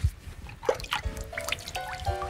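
Water dripping in single plinking drops, with a low thud right at the start. A few held musical notes come in about halfway through.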